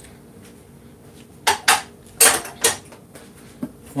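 Kitchen items clinking and clattering against hard surfaces: about five sharp clinks in two quick clusters a little past the middle, as things are handled around a glass mixing bowl of salad.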